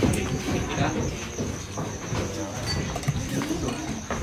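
Indistinct low voices talking in the background, with no clear words, over a faint steady high-pitched whine.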